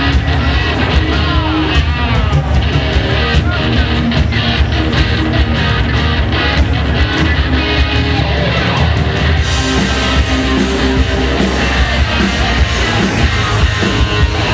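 A live rock band playing loudly, with electric guitars, bass and drums, and a man singing into a microphone over it. The sound grows brighter and fuller about ten seconds in.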